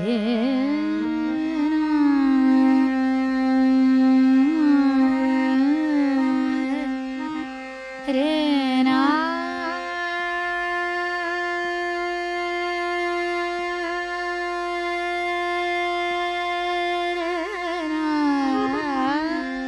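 A female Hindustani classical singer singing raag Megh Malhar over a steady accompanying drone: ornamented phrases with gliding, oscillating pitch, then about ten seconds in one long held note, with new gliding phrases starting again near the end.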